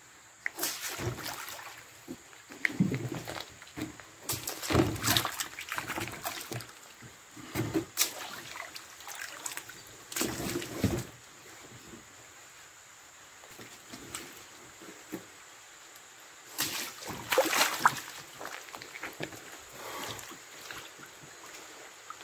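Water sloshing and splashing in a tub as large jackfruit are pushed and turned by hand to rinse them, in irregular bursts with a quieter stretch past the middle.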